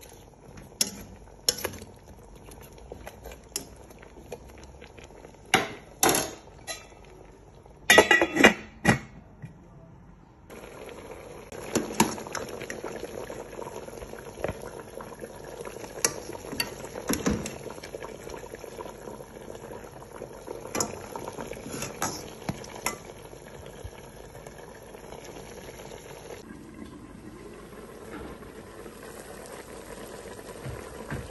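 A metal spoon knocking and scraping against a metal cooking pot of soup, sharp irregular clinks for about the first ten seconds. Then the pot of soup boiling steadily, a bubbling hiss with occasional clinks.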